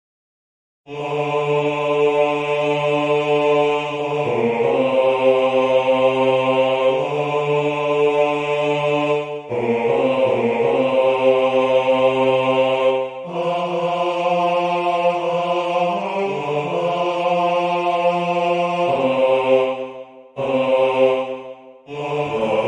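A single bass-range voice singing a slow melody in long held notes, starting about a second in and moving to a new pitch every one to several seconds, with a brief break near the end.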